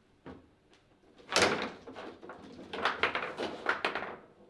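Foosball table in fast play: a loud hard knock about a second and a half in, then a rapid run of clattering knocks as the ball is struck by the figures and bounces off the table walls and rods.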